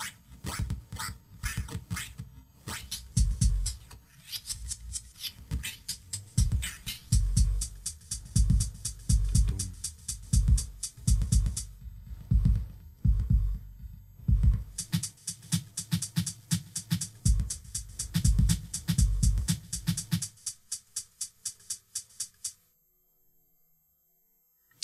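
Electronic drum beat played live on a homemade drum machine: deep low drum hits under fast high hi-hat-like ticks, the pattern shifted back and forth by hand like a scratched record. The beat stops a couple of seconds before the end.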